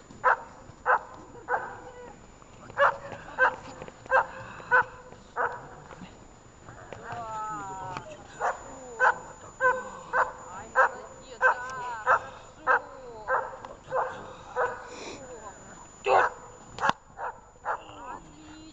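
German Shepherd barking at the helper during bite-work agitation: short, sharp barks about two a second, broken by a couple of pauses, with some wavering whining in between.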